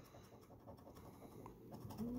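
Faint scraping of a plastic scratcher tool rubbing the coating off a lottery scratch-off ticket, in quick repeated strokes.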